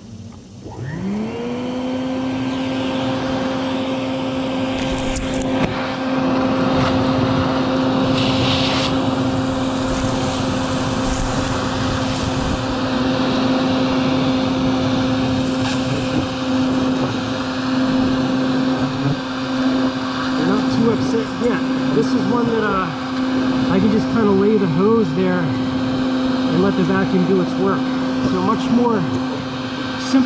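Vacuum motor starting about a second in, winding up to a steady hum as its hose draws in bald-faced hornets at the nest entrance. Over the last third, hornets buzz close by with a wavering pitch above the hum.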